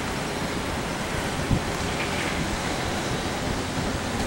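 Steady rushing outdoor noise of wind and moving water, with a short low thump about one and a half seconds in.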